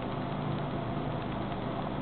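Steady hum of a desktop PC's cooling fans running, with no change in pitch.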